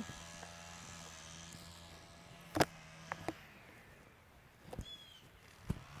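Quiet open-air ambience with a faint steady hum. There is a sharp knock about two and a half seconds in, a few softer taps, and a short high falling chirp from an animal about five seconds in.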